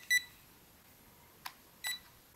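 Short, high electronic beeps from the JJRC H36's handheld transmitter, a pair at the start and a single one near the end, with a small click between them. They come as the left stick is pushed up and down to bind the quad to the radio.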